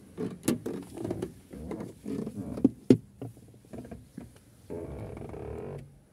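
Knocks, clicks and rustling of someone climbing into a Chevrolet Tavera through the open driver's door, with sharper knocks about half a second and three seconds in. A steady rushing noise runs for about a second near the end and stops suddenly.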